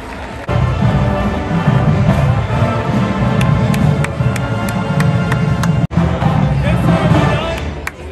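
University marching band playing in the stands: loud brass over a heavy low bass line from the sousaphones, with drum and cymbal hits. It comes in suddenly about half a second in, breaks off for an instant near six seconds, and tails off at the end.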